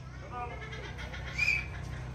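A lull in the sermon: a steady low electrical hum, a faint voice early on, and about a second and a half in one short high-pitched call.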